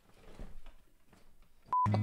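A quiet stretch with a faint low rustle early on, then a single short electronic beep near the end. Right after the beep, audio of a voice and guitar music cuts in abruptly.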